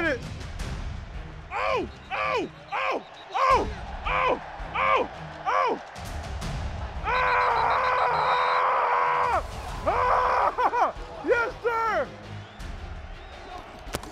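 A man's short wordless shouts, about eight in a row, each falling in pitch. About seven seconds in, a couple of seconds of music comes in, and then a few more shouts follow.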